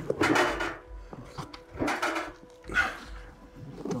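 A backpack rubbing and scraping against the rough walls of a narrow gap as it is squeezed and handed through, in three or four short bursts, the first the loudest.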